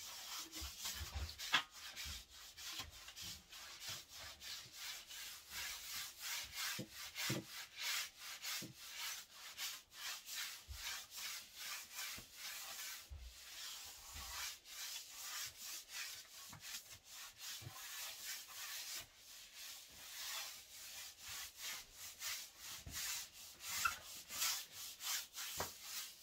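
A broom sweeping a tiled floor: a steady run of quick, repeated scratchy bristle strokes.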